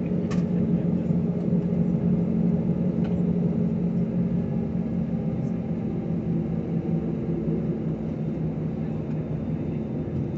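Airliner jet engines running at low power while the plane taxis, heard inside the cabin as a steady low hum with a few held tones. A couple of faint clicks come just after the start and again about three seconds in.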